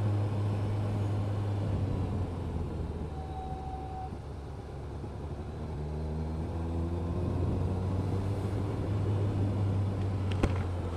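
BMW R1250 RT boxer-twin engine running on the move, with wind and road noise, heard from on the bike. The engine eases off in the middle, then its note rises a little as it pulls on again.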